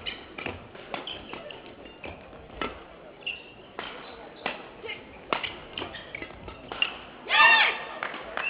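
Badminton rackets striking the shuttlecock in a fast doubles rally: a string of sharp, irregular cracks, with footfalls on the court. Near the end a player gives a short loud shout as the rally ends.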